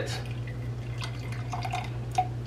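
Distilled white vinegar poured from its bottle into the plastic body of an Angry Mama microwave cleaner, a faint trickle with a few light ticks.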